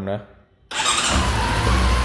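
Honda CB400 Super Four's inline-four engine starting on the electric starter, firing almost at once about two-thirds of a second in and settling into a steady idle. It starts readily even after sitting parked, so the battery still holds its charge.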